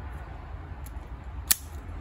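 A single sharp click about one and a half seconds in as a CJRB folding knife's blade is swung open, over a low steady hum.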